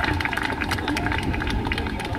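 Open-air pitch ambience: a steady low rumble of wind on the microphone, with a scatter of light clicks.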